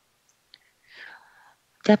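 A pause in a man's speech: dead silence, a faint breath about a second in, then his voice starts again near the end.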